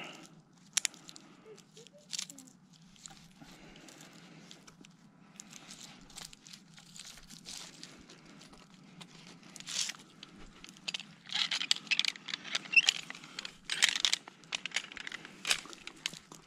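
Climbing rope and carabiner being handled against conifer branches and bark: rustling of twigs and needles with scattered short clicks and snaps, growing busier and louder in the last few seconds.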